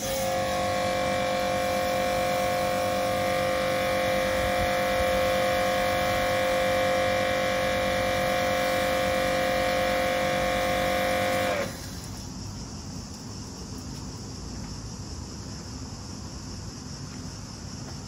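Kärcher K7 pressure washer spraying through an MJJC foam cannon: the motor and pump run with a steady whine over the hiss of the spray for about twelve seconds, then cut off suddenly when the trigger is released. The cannon is putting out watery soap rather than foam, which the owner puts down to its nozzle being drilled too large at 1.5 mm.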